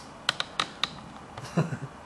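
Handling noise: a quick run of about six light clicks and taps in the first second, then a softer knock about a second and a half in.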